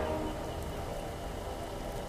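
Quiet, low ambient drone from the slot game's soundtrack, with faint held tones over a low rumble.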